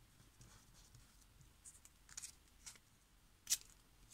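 Faint rustle and rub of paper under fingertips as masking tape is pressed down onto a ledger-paper envelope flap, with a few soft scratchy sounds and one sharper tick about three and a half seconds in.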